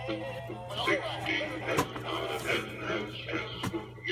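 Animated pirate treasure chest toy singing a pirate song through its small speaker, with a few sharp clicks, about one second apart, near the start and middle.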